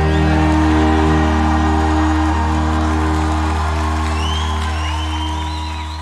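A band's final held chord ringing out, keys and a deep bass note sustained, slowly fading away. A few high gliding tones come in over it in the second half.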